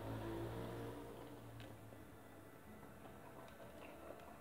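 Quiet chewing of a mouthful of hamburger with the mouth closed, with a few faint soft clicks from the mouth.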